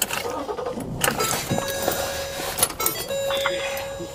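A steady electronic tone that starts about a second and a half in, breaks off briefly, then resumes, with a few sharp clicks around it.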